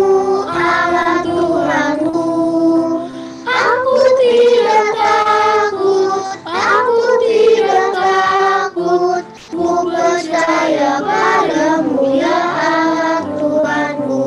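A group of children singing a song together, their separate home recordings mixed into one virtual choir, in sustained phrases with short breaks between them.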